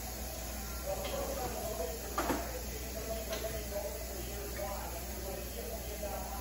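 Faint, indistinct voices over a steady low hiss, with a sharp click a little over two seconds in and a lighter one about a second later.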